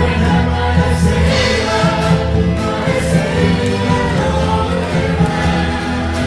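A worship team singing a German praise song, several voices together in choir style over instrumental accompaniment, steady and continuous.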